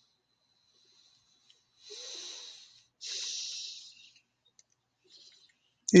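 A person breathing close to the microphone: two breaths of about a second each, about two and three seconds in.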